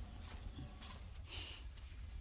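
Faint footsteps on dry ground and straw, a few irregular light crunches, over a low rumble of wind on the microphone.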